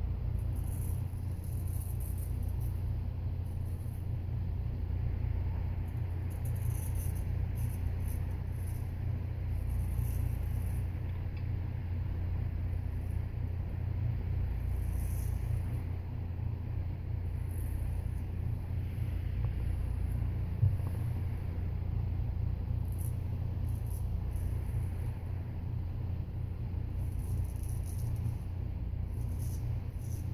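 Friodur 6/8-inch straight razor scraping through lather and stubble in short, irregular strokes on the first pass, faint over a steady low rumble.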